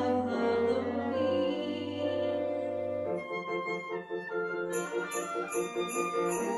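Live chamber ensemble of winds, strings and piano holding a sustained chord over a low bass note, then moving at about three seconds into a lighter, rhythmic accompaniment. Near the end sleigh bells come in, shaken in a steady beat of about three strokes a second.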